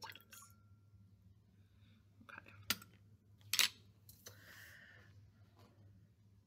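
Glass clinking twice as a small glass beaker is tipped over a larger one, then a brief soft trickle of liquid as the wash water is decanted off the silver crystals.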